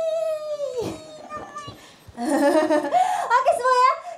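Young women's voices through stage microphones: a long, high held call ends about a second in, followed by quieter voice snatches and then rapid talking with pitch swooping up and down.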